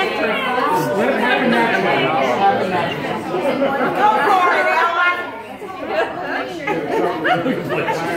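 Several people talking at once: indistinct overlapping chatter that eases briefly about five and a half seconds in.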